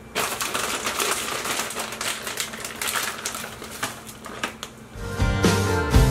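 Rapid crackling and rustling as about two cups of shredded cheese are added to a casserole mixture. Background music comes in near the end.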